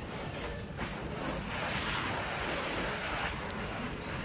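Garden hose spray nozzle spraying water, a steady hiss that starts about a second in, over a low rumble of wind on the microphone.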